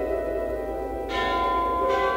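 Orchestral music from a piano concerto: held chords, with two sudden bright strikes that ring on, about a second in and again near the end.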